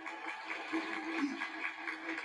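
Audience applauding: a fairly faint, even patter of many hands clapping.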